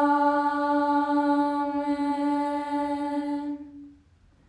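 A single long sung note held steady on one pitch, unaccompanied, fading out near the end.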